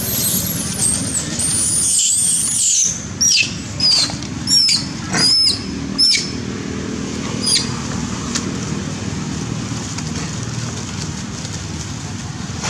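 Macaques screaming in distress during a scuffle: shrill, wavering screams for the first few seconds, then a run of short falling squeals about two-thirds of a second apart, and a last one a little past the middle. A steady low rumble runs underneath.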